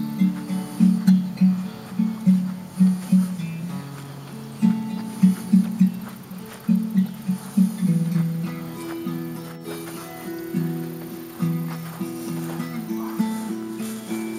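Acoustic guitar music: a melody of plucked notes over a low bass line.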